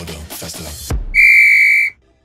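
Electronic dance music with a steady beat, then about a second in a single loud, high-pitched electronic beep from a workout interval timer, lasting under a second: the signal that the work set has ended and the rest period begins.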